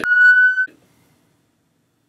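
A single steady electronic beep, one flat high tone lasting about two-thirds of a second.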